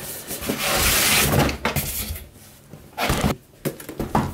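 Cardboard scraping and rubbing as a boxed kit is slid out of a tight cardboard shipping carton, a long scrape in the first second and a half, then a few short knocks near the end.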